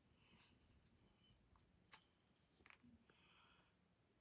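Near silence, broken by three faint, short taps and clicks of a clear acrylic stamp block being handled on the paper and work mat.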